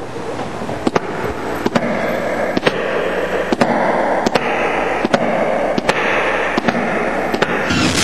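Opening of a Latin dance-pop music video's soundtrack: a dense, crackling noise bed that swells up, cut by sharp clicks at an even beat of a little under one a second, ending in a short sweep.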